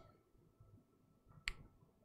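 Near silence with one short, sharp click about one and a half seconds in.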